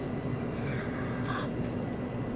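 A single faint sip of hot coffee from a mug about halfway through, over a steady low hum of room tone.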